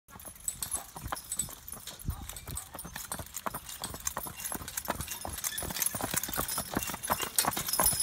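Hoofbeats of a team of three draft horses hitched abreast, clip-clopping on a paved road and growing steadily louder as the team comes closer, with faint jingling of harness hardware.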